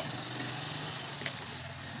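Steady low drone and hiss of a running motor, with one faint click about a second in.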